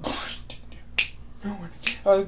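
A few sharp, high-pitched clicks, the loudest about a second in and just before the end, after a short burst of hiss at the start.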